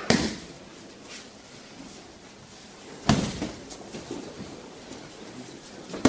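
Thuds of a body landing on tatami mats as a partner takes break-falls from aikido throws: a sharp one just at the start and another about three seconds in, with lighter knocks and shuffles between them.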